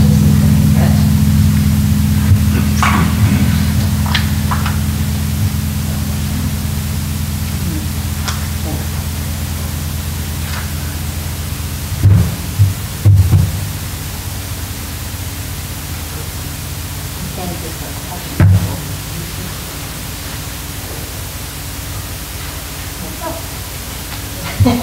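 Steady electrical hum and hiss from the sound system, slowly fading, with faint voices murmuring in the room and a few dull low thumps about halfway through and again later.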